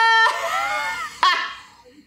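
A high-pitched cry held steady at the start, then breaking into wavering cries, with a short sharp cry just past a second in and a fade near the end.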